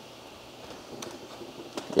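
Quiet room tone with two faint clicks from the computer's controls, about a second in and near the end.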